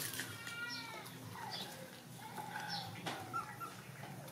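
Young puppies whining and squeaking while nursing from their mother: several short, high, meow-like calls, some falling in pitch.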